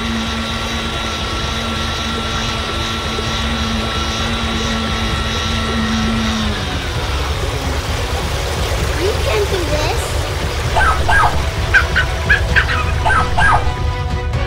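Cartoon rescue boat's motor, a steady droning hum over a low rumble, sliding down and cutting out about six and a half seconds in. Near the end come several short, high, voice-like calls.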